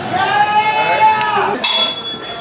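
A man's long, high-pitched yell, held for about a second and a half. Near the end come a short sharp noise and a brief high beep.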